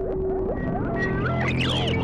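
Improvised ambient Eurorack modular synthesizer drone: a steady low drone and a held tone under higher tones that bend and glide up and down, swooping about one and a half seconds in.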